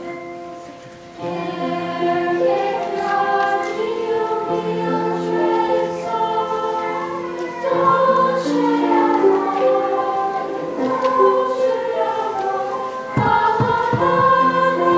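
Seventh-grade choir singing in parts with grand piano accompaniment. After a brief quieter moment of sustained piano tones, the voices come in strongly about a second in and carry on through the phrase.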